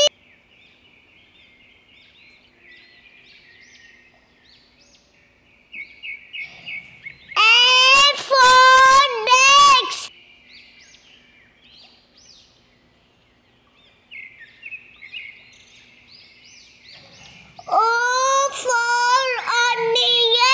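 Faint chirping of small birds over soft outdoor ambience. It is broken twice, about seven seconds in and again near the end, by a high child's voice singing or calling out loudly.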